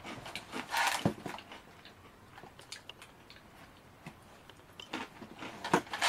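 Someone biting and chewing a crisp Glico Pretz pretzel stick: a few crunches about a second in, then quieter chewing with small scattered crunches.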